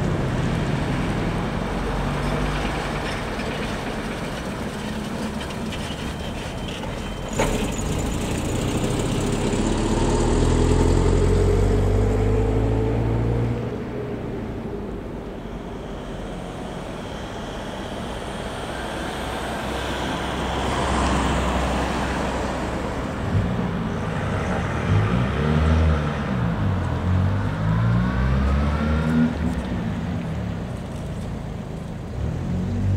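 Street traffic: a minibus and cars driving past on an asphalt road, engines and tyres swelling and fading as each vehicle passes. There is a single sharp click about seven seconds in.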